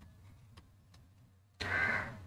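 Near silence with a few faint ticks, then a short breath-like vocal sound near the end.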